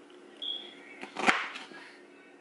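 A kitchen knife cutting through fresh pineapple, with one sharp chop onto the cutting board a little past halfway. Shortly before the chop there is a brief high-pitched squeak.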